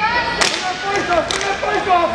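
Inline hockey sticks cracking against the puck and each other as play restarts from a faceoff, several sharp clacks, the loudest about half a second in.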